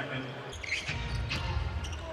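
A basketball dribbling on a hardwood arena court over the low murmur of the crowd, which swells about half a second in, with a few sharp thuds of the ball near the end.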